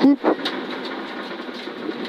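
Subaru Impreza N4 rally car's turbocharged flat-four running steadily at speed, heard from inside the cabin together with tyre and road noise on a wet road.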